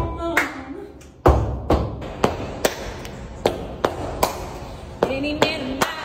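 Heeled boots stomping a steady beat on a concrete floor, about two and a half stomps a second. A woman sings over the stomps briefly at the start and again near the end.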